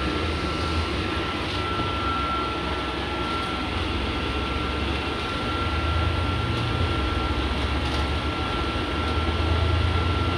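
Inside a moving double-decker bus on the upper deck: steady engine and road rumble with a thin, constant whine over it. The rumble swells a little about six seconds in and again near the end.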